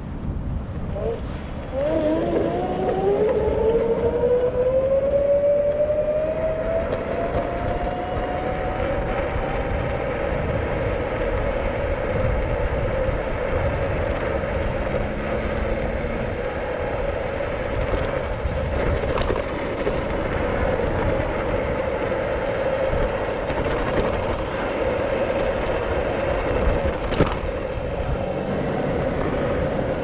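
Boosted Rev electric scooter's motor whine climbing in pitch as the scooter accelerates from a standstill, then holding one steady pitch at cruising speed, over wind and road rumble on the microphone.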